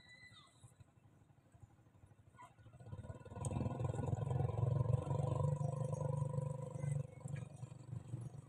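A motor vehicle engine passing close by: it swells in from about three seconds in, holds a steady drone for several seconds, then fades near the end.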